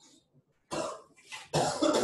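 A person coughing: a first cough about two-thirds of a second in, then a harder run of coughs in the second half, the loudest.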